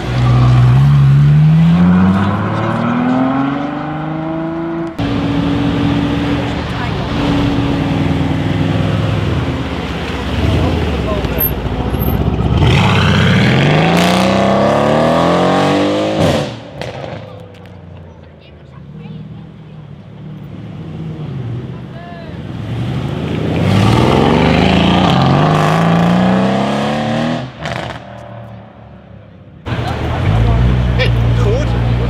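Performance cars, among them a Ferrari and a Mercedes-AMG C63 S, accelerating hard one after another: three runs in which the engine note climbs in pitch through the gears, with a quieter stretch before the last.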